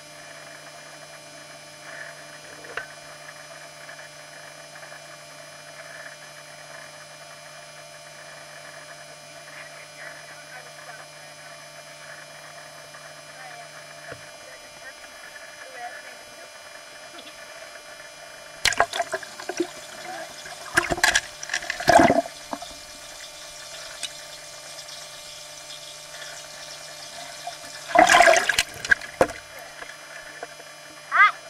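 Pool water lapping and splashing over a steady hum, with loud bursts of splashing and voices twice, about two-thirds of the way through and near the end.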